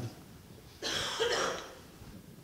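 A person's short cough, lasting under a second, starting about a second in, with low quiet on either side.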